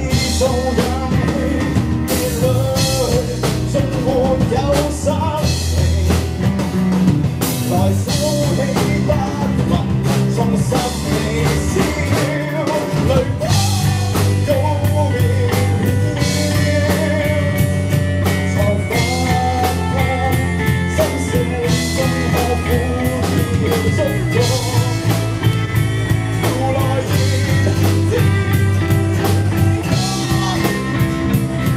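Live rock band: a male lead vocalist singing over strummed acoustic guitar, electric guitar, bass guitar and a drum kit with cymbal crashes.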